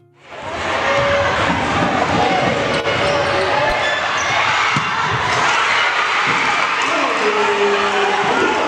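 Live game sound in a gym: a crowd's noise and shouting voices, with a basketball bouncing on the hardwood floor.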